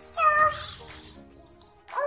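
Background music with a single short, high meow-like cry about a quarter of a second in.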